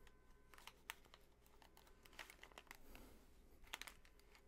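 Near silence broken by faint rustles and light clicks of over-ear headphones being adjusted on the head, with a small cluster of clicks near the end.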